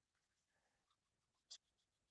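A nail file scraping once, briefly and faintly, across a plastic doll's neck about one and a half seconds in, smoothing the super-glued neck repair.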